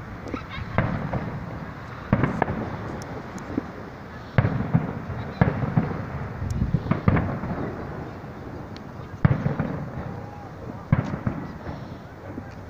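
Fireworks display: aerial shells bursting with sharp bangs about every one to two seconds, seven in all, each trailing off in a rumble.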